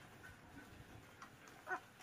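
Near silence broken by one brief, faint puppy whimper about two-thirds of the way through, as the puppy has parasites picked out of its ear with tweezers.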